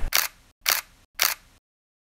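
Camera shutter clicks, three in quick succession about half a second apart.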